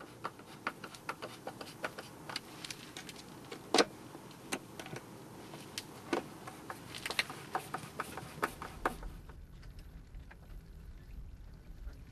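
Light clicks and taps of hands handling and closing the plastic cover of a Grundfos SQFlex IO 100 switch box, with one sharper click about four seconds in. A low rumble comes in near the end.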